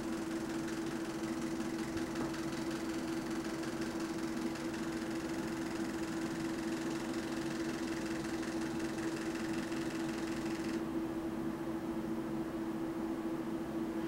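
Steady hum of electronic equipment running, one strong constant tone over an even hiss; the higher part of the hiss drops away about eleven seconds in.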